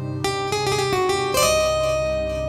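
Instrumental intro of a Hindi film song played on electronic keyboards: a run of short plucked-string notes over a sustained bass note.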